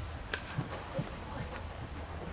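Horse trotting on soft sand arena footing: faint, irregular hoof thuds and a few light clicks over a steady low hum.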